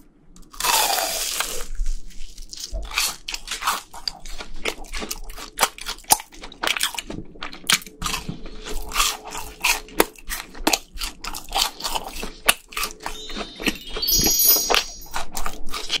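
Close-miked crunching bite into a crispy fried cheese ball about half a second in, followed by a long run of crisp crunching and chewing clicks as it is eaten.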